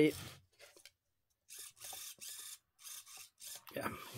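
Steering servo of an RC rock crawler buzzing in several short, faint bursts as it swings the front wheels back and forth; the servo is broken.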